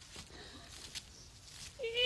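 Faint rustling and small clicks on a stage, then near the end a woman's voice breaks into a long, wavering wailing cry.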